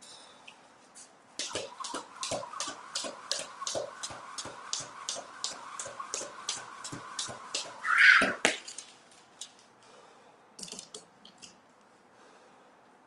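Jump rope singles: the rope slaps the floor about three times a second, some twenty times, over the steady whir of the turning rope. There is a louder burst just before it stops.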